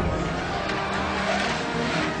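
Film score music continuing under a rushing noise that swells in the middle.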